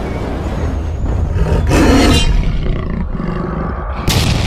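Cinematic intro sound effect: a continuous deep rumble with a growling, big-cat-like roar that swells about two seconds in.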